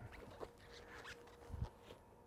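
Faint rustling and a few soft knocks from a hot stick being carried and handled on the walk to the equipment, with a faint steady tone in the background.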